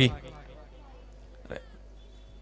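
A man's commentary voice trails off at the start, then a pause with faint steady background noise, broken once by a brief faint sound about a second and a half in.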